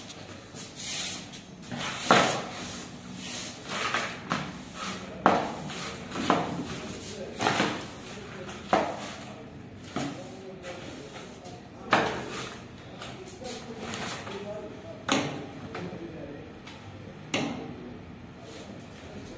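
Broom sweeping a tiled floor: short swishing strokes at irregular intervals, roughly one every one to two seconds, with the odd scrape of a plastic dustpan.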